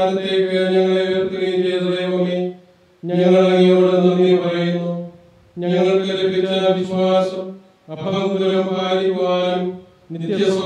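A man chanting a liturgical text on a near-steady reciting tone, in four phrases of about two seconds each with short pauses for breath between them.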